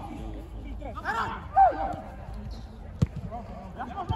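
Footballers' voices calling out across an outdoor pitch, the loudest shout about a second and a half in, then a single sharp thud of the ball being kicked about three seconds in.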